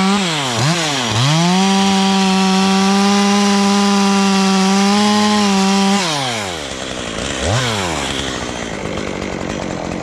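Stihl chainsaw at full throttle cutting into a walnut trunk. The revs dip twice near the start, then hold high and steady. About six seconds in, the engine falls to idle, with one short blip of throttle about a second and a half later.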